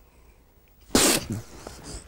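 A man's single sudden, explosive sneeze-like burst of breath about a second in, after a moment of quiet, fading within about half a second.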